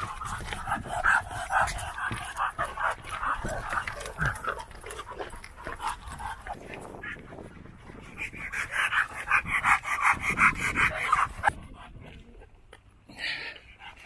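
Dog panting rapidly in two spells: one through the first four seconds or so, and a louder one from about eight to eleven and a half seconds in.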